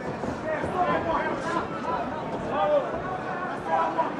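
People's voices speaking over a low background of crowd noise in the arena.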